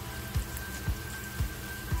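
Diced vegetables sizzling gently in butter in a frying pan, a soft steady hiss. Background music plays along with it, a low thump about twice a second under a few held notes.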